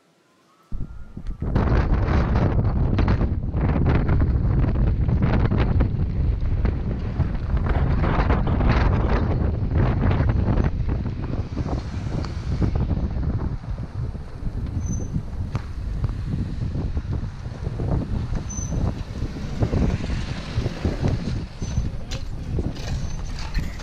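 Wind buffeting the microphone of a camera at a moving car's side window, with the rumble of the car on a rough dirt road. It starts suddenly about a second in and eases a little about halfway through.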